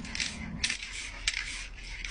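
Aerosol spray paint can hissing in several short bursts as white paint is sprayed over a stencil.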